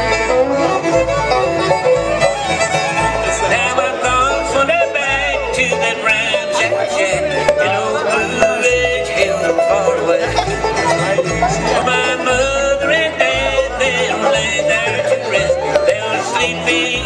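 Live acoustic bluegrass band playing an instrumental passage. Fiddle and banjo lead over guitar and mandolin, with the upright bass keeping a steady beat of about two notes a second.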